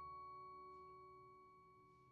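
A single high mallet-struck metal note ringing on and slowly fading, faint, with a quieter low chord dying away beneath it.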